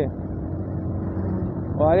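Motorcycle engine running steadily at cruising speed, a low even hum under wind and road noise, heard from the pillion seat of the moving bike.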